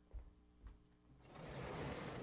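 Two soft knocks, then, a little over a second in, a vertically sliding chalkboard panel being pushed up, rumbling in its track and growing louder.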